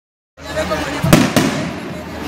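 Two sharp bangs from festival skyrockets (cohetes) bursting about a second in, a quarter second apart, over a crowd's chatter.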